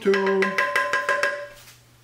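A wooden spoon tapped rapidly against a metal frying pan, about ten quick taps with the pan ringing under them, fading out near the end.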